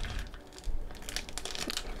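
Foil wrapper of a trading-card pack crinkling faintly as it is gripped and worked in the hands.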